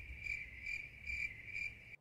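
Cricket-chirping sound effect edited in: a steady high chirp pulsing about twice a second over a low hum. It starts and stops abruptly. It is the 'crickets' gag marking an awkward silence after a joke falls flat.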